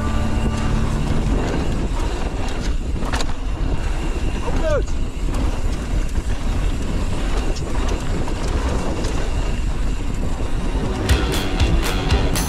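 Wind rushing over a mountain-bike rider's action-camera microphone, mixed with knobby tyres rolling fast over a gravel dirt trail. Near the end comes a run of clattering knocks from rough ground. About five seconds in there is a brief gliding squeal.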